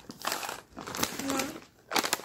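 Plastic snack packets crinkling as they are handled and swapped in the hand, an irregular crackle in two stretches of about a second each.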